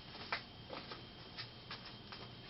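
Faint clicks and scrapes of a cover being unscrewed by hand from the threaded metal body of a scanning electron microscope's rotary vacuum feedthrough: several short ticks, the sharpest about a third of a second in.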